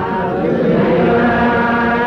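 Menzuma, Ethiopian Islamic devotional chant, sung in a hadra: voices chanting steadily on long held notes.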